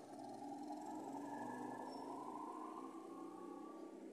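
Faint, steady background noise with a low hum and no distinct events.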